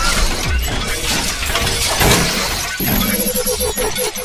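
Channel logo intro sound design: loud shattering, glass-breaking effects over music.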